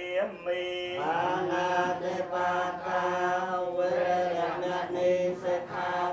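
Buddhist funeral chanting: several voices chanting together on long, held notes that shift pitch only a little.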